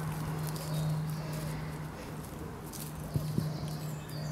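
Outdoor ambience: a steady low hum with a few faint, short pitched notes and soft clicks, two clicks close together about three seconds in.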